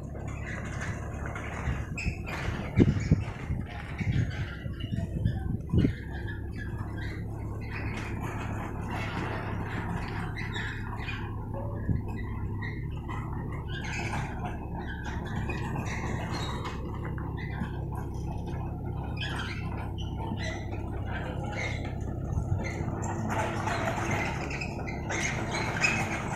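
Construction-site ambience: a steady low machine hum, with a few sharp knocks about three to six seconds in.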